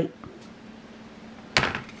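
A single sharp clack about one and a half seconds in, from handling a Stamparatus stamping platform and its window sheet, over a faint steady hum.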